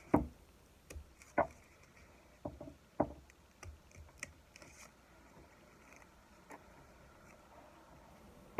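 Scissors with titanium-coated blades snipping through a thick stack of folded paper: a series of short, sharp snips, the loudest three in the first three seconds, then fainter and further apart.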